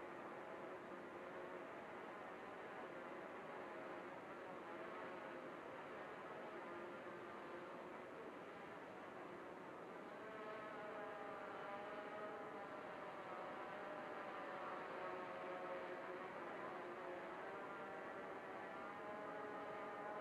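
Ideafly MARS 350 GPS quadcopter's propellers humming faintly high overhead with a wavering pitch, growing a little louder from about halfway through as the quad descends under return-to-home.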